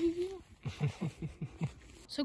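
A person's drawn-out "oh non" trailing off, then a man laughing in about six short, low, falling pulses.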